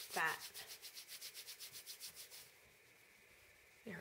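Hands rolling a small piece of wool between the palms: quick, rhythmic rubbing of several strokes a second that stops about two and a half seconds in.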